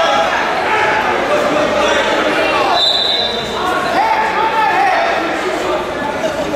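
Raised voices, coaches and spectators shouting to the wrestlers, echoing in a gym, with a brief high-pitched tone about three seconds in.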